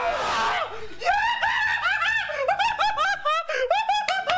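A man shrieking with excited laughter: a loud, scream-like burst, then from about a second in a rapid run of short, high-pitched laughing syllables, several a second.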